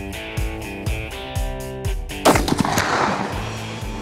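A single gunshot about two seconds in, ringing on briefly, over background music with a steady beat.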